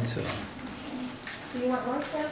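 A man's voice, a short 'So' at the start and speech resuming near the end, with a quieter lull of indoor room tone between.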